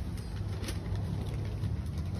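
A steady low rumble with a faint hiss above it and a couple of faint clicks.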